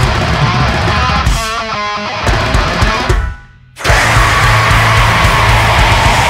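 Heavy metal band recording with guitar and drums. The band cuts out for about half a second a little past the middle, then comes straight back in.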